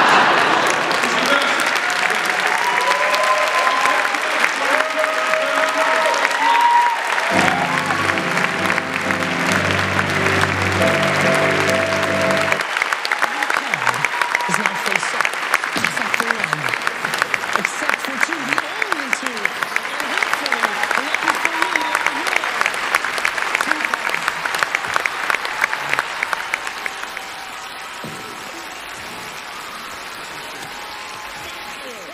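Theatre audience applauding and cheering. About seven seconds in, a held musical chord sounds for some five seconds. The applause falls away a few seconds before the end.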